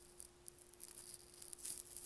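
Very faint room tone: a steady low hum with scattered faint crackles.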